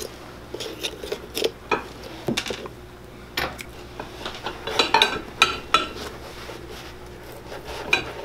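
A steel knife blade prying and scraping under a boot's metal heel rim and along the leather sole, making irregular small metallic clicks and clinks. A cluster of louder ringing clinks comes about five seconds in. The heel rim is being worked loose so it can be kept and refitted.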